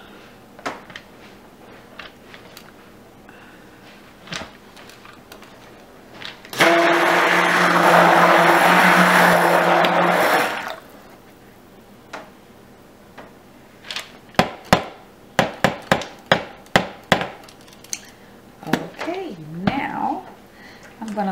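Stick blender running for about four seconds in cold-process soap batter, a steady whir over a low hum that starts and stops abruptly. A few seconds later comes a quick run of about a dozen sharp taps.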